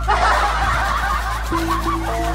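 A quick run of high-pitched snickering laughter that stops near the end, over background music with steady low tones.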